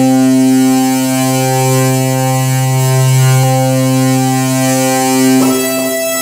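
An electronic keyboard holds one sustained chord, steady and unbroken for about five seconds, with the chord shifting near the end.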